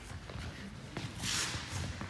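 Footsteps and shoes shuffling on a wooden sports-hall floor, with a few light taps and a brief scuff a little past the middle.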